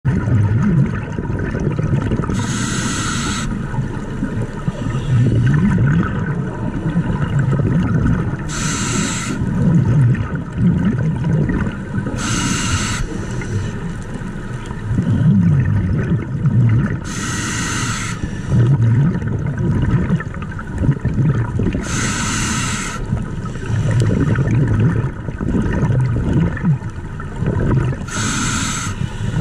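Scuba regulator breathing underwater: a hiss of about a second roughly every five seconds, with low bubbly rumbling in between.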